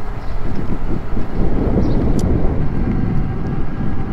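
Wind rushing over the microphone, with tyre rumble from a KBO Flip folding e-bike's 20-by-3 fat tyres rolling on asphalt at riding speed.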